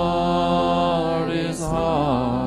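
Worship team voices singing in unison over acoustic guitar and bass: one long held note, then a short hissed consonant and the next phrase starting near the end.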